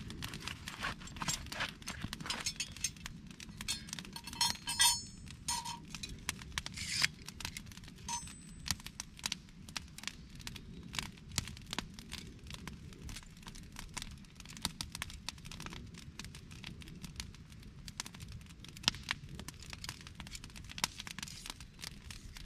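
Wood campfire crackling with irregular pops, while steel tools clink and canvas rustles as they are handled, the clinks clustered a few seconds in.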